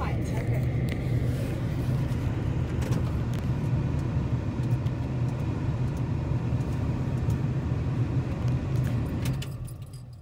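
Car driving on a gravel road: a steady low rumble of engine and tyres that dies away near the end.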